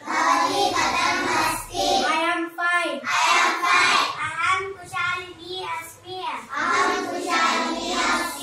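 A group of children chanting phrases aloud in unison in a sing-song rhythm, as a class repeats lines read off the blackboard, in about four phrases with short breaks between them.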